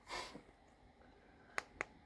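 Two short, sharp clicks about a fifth of a second apart near the end from a small tactile pushbutton on a hand-built control board. This is the switch that turns the figure's eyes on and off.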